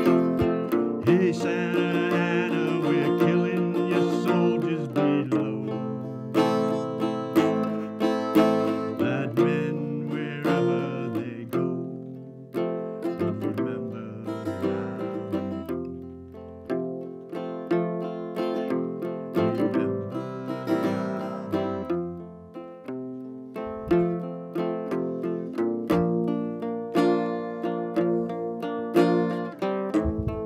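Acoustic guitar music with no words: a plucked instrumental passage of a folk ballad, with a higher, wavering melody line above the guitar in the first few seconds and again about ten seconds in.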